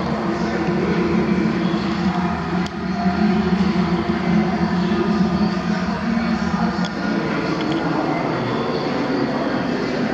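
Drive motor and gearing of a stainless steel V-blender running, a steady mechanical hum with a few held tones; it dips briefly about three seconds in, then runs a little louder for a few seconds.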